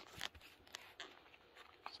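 Near silence with a few faint clicks and rustles, as from a phone being handled while it is turned around.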